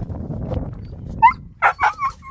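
Siberian husky whining and yipping: one short high whine about a second in, then two sharp yips near the end, over a low rumble.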